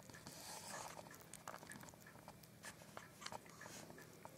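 Faint, quick wet clicks of a young hedgehog lapping milk from a china plate, with a brief soft hiss about half a second in.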